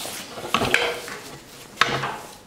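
Handling clatter: a light metallic clink about half a second in, a second one just after, and a sharper knock near the end, with soft rustling between.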